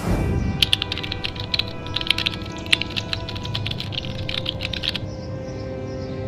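A quick whoosh, then rapid computer-keyboard typing clicks for about four seconds that stop abruptly, a typing sound effect over steady background music.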